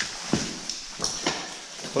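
A few irregular knocks and scuffs of boots stepping on the loose rocky floor of a mine passage.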